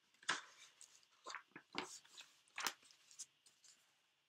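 A book being handled and its pages turned: a series of short, soft paper rustles and taps.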